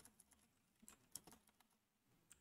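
Near silence with a few faint, scattered computer keyboard keystrokes as code is typed and deleted.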